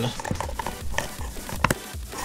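LEGO plastic parts rubbing and clicking as an axle with three rubber-tyred wheels is wiggled down into a brick frame, with a sharp click near the end as it seats.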